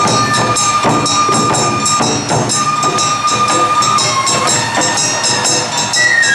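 Awa-odori street-band music: a bamboo flute holding two long high notes over a steady beat of drums and a clanging hand gong.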